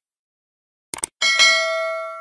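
Subscribe-button sound effect: a quick double click just before a second in, then a bell ding that rings on with several steady tones and slowly fades.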